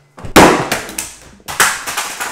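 Amazon Echo smart speakers being knocked off a table: three sudden loud thuds, the first about a third of a second in and the last near the end.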